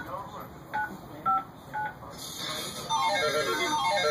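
Telephone keypad tones: three short beeps about half a second apart, a caller keying in a code on her phone. About two seconds in, music starts with a run of falling notes.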